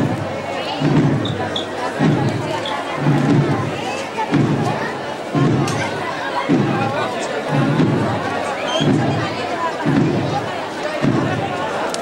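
A slow, muffled processional drum beating about once a second in a steady funeral-march pulse, over the murmur of a large crowd.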